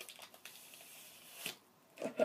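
Faint rustling and crinkling of a Tootsie Roll wrapper being handled and unwrapped, with a few small clicks and a sharper tick about one and a half seconds in.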